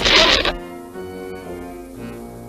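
A short, loud rushing cartoon sound effect lasting about half a second, followed by quieter background music with held notes.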